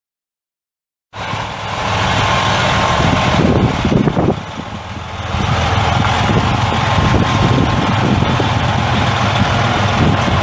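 Detroit Diesel Series 60 14.0 L straight-six turbo diesel in a semi truck, running steadily. The sound cuts in abruptly about a second in and dips briefly near the middle.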